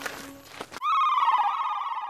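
Cartoon sound effect: a trilling, bell-like ringing tone that begins a little under a second in and sags slightly in pitch. Before it, the tail of a music sting fades out.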